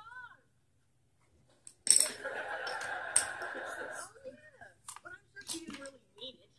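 A person's voice, indistinct, with a loud breathy burst starting about two seconds in and lasting about two seconds.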